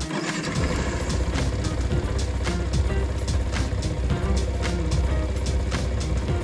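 Yamaha R15M's 155 cc single-cylinder engine starting from cold and idling steadily, a low rumble that comes in just after the start, with background music over it.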